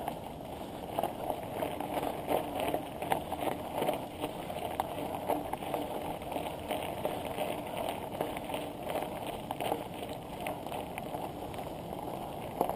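Bicycle tyres rolling over a gravel track: a steady rough crunching with many small irregular crackles and rattles.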